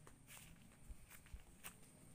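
Faint footsteps on dirt and grass: a few soft, irregular steps.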